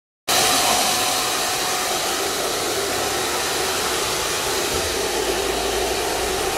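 Hand-held hair dryer blowing steadily, a constant rush of air with a faint whine.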